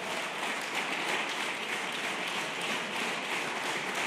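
An audience applauding steadily. It is a dense, even clapping that holds for the whole stretch.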